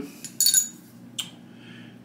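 A small tasting spoon set down on a wooden table: a short clink about half a second in, then a lighter tap about a second later.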